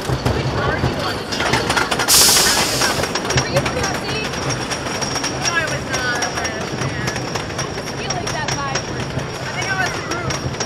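Wooden roller coaster train climbing its chain lift hill: a steady mechanical rumble with rapid, even clicking from the lift, and a brief loud hiss about two seconds in.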